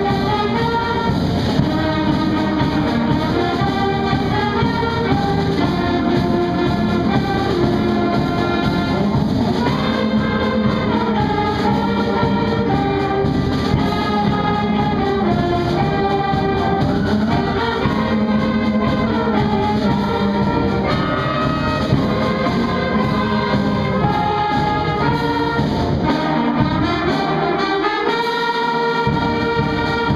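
A student concert band of brass and woodwinds (flutes, saxophones, trumpets) playing a piece in sustained, changing chords. The lowest parts drop out for a few seconds near the end.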